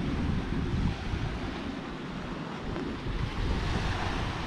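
Small waves washing onto a sandy beach and shallow water running, with wind rumbling on the microphone.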